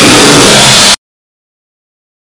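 About one second of deliberately overdriven, 'deep-fried' meme audio: a sound boosted until it clips into a harsh wall of distorted noise at full volume. It cuts off suddenly into digital silence.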